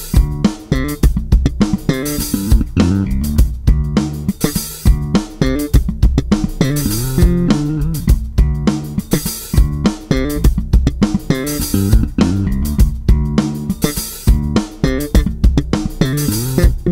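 Lakland 55-94 Deluxe five-string electric bass played fingerstyle, a busy line of bass notes over a drum-kit backing track.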